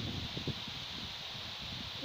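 Outdoor wind: an uneven low rumble of wind on the microphone, with leaves rustling in the trees overhead.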